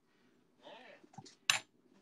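Brief handling noise at a cooker: a soft rustle or scrape, then a single sharp clink about one and a half seconds in.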